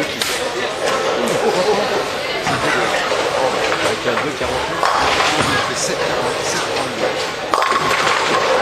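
Busy bowling-alley hubbub of many people talking, with the sudden clatter of a ball striking the pins near the end.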